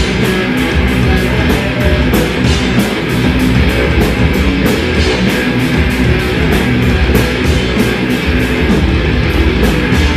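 Live metal band playing loud: distorted electric guitars and bass over drums, with steady, evenly spaced cymbal strikes.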